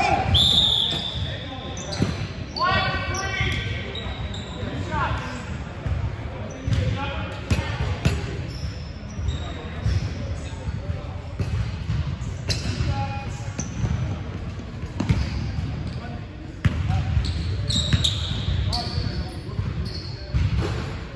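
Basketball bouncing on a hardwood gym floor in a large echoing hall, with a short high whistle blast right at the start and another high tone near the end.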